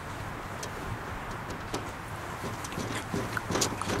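Steady outdoor background rumble, with a few faint short clicks and knocks in the second half.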